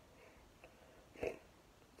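A quiet room with one short breath from a person close to the microphone, a little over a second in.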